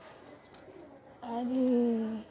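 A woman's voice holding one long hummed or drawn-out vowel, starting a little past halfway and sinking slightly in pitch, over quiet shop background.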